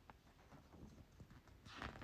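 Near silence with faint, irregular small taps and handling noises, as of a card or leaflet being handled.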